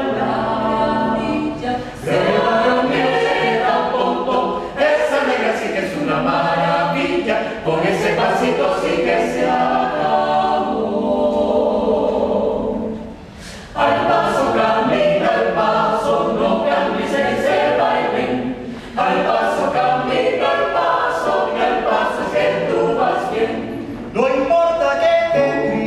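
Mixed-voice a cappella ensemble singing a porro in a jazz arrangement, several voice parts together, with a brief break in the singing about halfway through.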